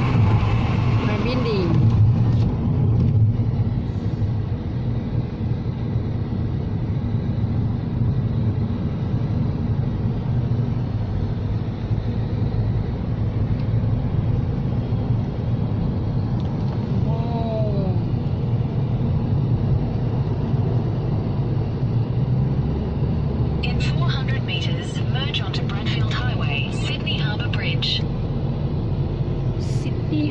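Steady low road and engine rumble inside a moving car's cabin. A cluster of sharp clicks comes about three-quarters of the way through.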